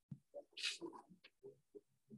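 Faint, indistinct voices: short murmured syllables with a few hissed 's' sounds.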